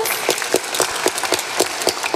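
Audience applauding, many hands clapping together, with one nearby pair of hands clapping about five times a second above the rest.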